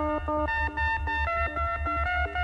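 Electronic dance music from a DJ set: a synthesizer plays a quick melody of short, stepping notes over a steady pulsing bass.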